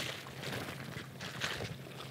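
Faint rustling of a plastic zip bag being handled and an energy bar being chewed, a few soft crinkles over a low, steady background hum.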